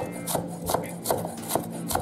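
Chef's knife chopping scallions finely on a wooden cutting board, an even rhythm of about two and a half chops a second.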